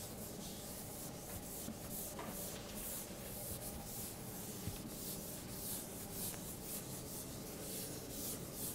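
Chalkboard eraser rubbing across a chalkboard in quick back-and-forth strokes, about two or three a second.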